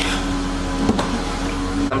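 Steady low mechanical hum with a deeper rumble under it, and one faint click about a second in.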